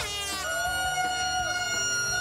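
A single horn-like note held steady for well over a second, starting about half a second in, with a falling sweep just before it.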